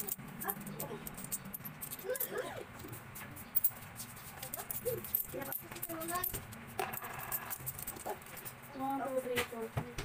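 Coins being handled and counted by hand: scattered light clicks and clinks of metal coins against each other and the table.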